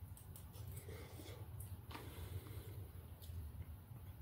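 A person biting and chewing food, with faint mouth smacks and clicks, over a steady low hum.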